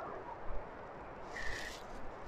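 Faint outdoor ambience with a low wind rumble on the microphone, and a brief soft breathy sound about one and a half seconds in.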